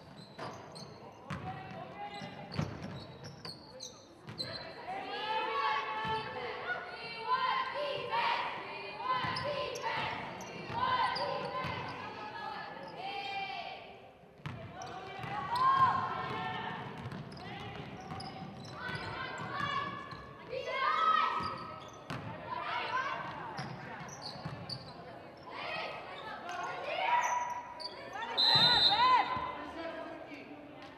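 Basketball game in a gymnasium: a basketball bouncing on the hardwood floor among players' and spectators' indistinct shouts and calls, loudest near the middle and near the end.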